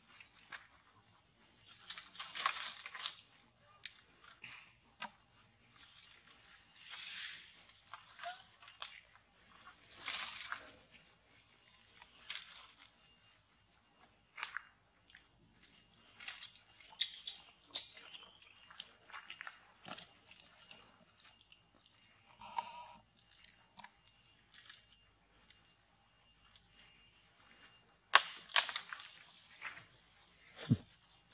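Short bursts of rustling and crackling from leaves and twigs as monkeys move about in a tree, coming every two or three seconds with some sharp snaps in between.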